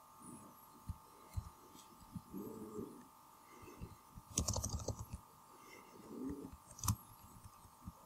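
Computer keyboard being typed on: scattered single keystrokes, with a quick run of key presses about halfway through, over a faint steady electrical hum.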